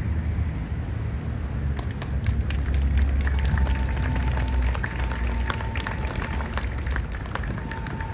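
Outdoor crowd applauding: scattered hand claps that thicken about two seconds in and carry on through, over a low rumble.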